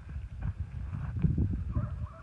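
Hooves of a mob of Merino ewes stepping and shuffling on dry dirt, an irregular run of low thuds.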